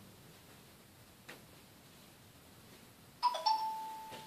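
A two-note electronic chime near the end: a bright tone sounds twice in quick succession, the second slightly lower and ringing on for over a second.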